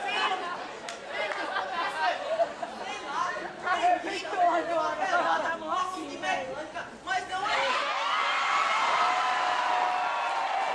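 Several voices talking over one another on stage, heard with the ring of a large hall; from about eight seconds in, long steady held tones take over.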